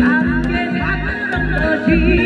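A woman singing a Korean song into a microphone over amplified backing music. Her voice slides and wavers in pitch above a steady bass beat that lands about twice a second.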